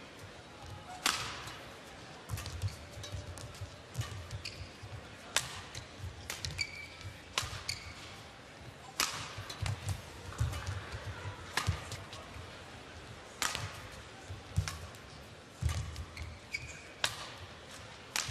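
A long badminton rally: racket strings striking the shuttlecock in sharp cracks about every second and a half, with short high shoe squeaks and footfalls on the court floor between the shots.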